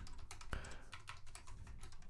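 Typing on a computer keyboard: a run of quick, light keystrokes, with one louder key press about half a second in.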